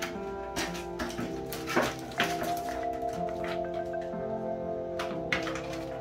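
Background music with a steady melody, over a scatter of short taps and clicks from cardboard and plastic card packaging being handled, most of them in the first couple of seconds and again about five seconds in.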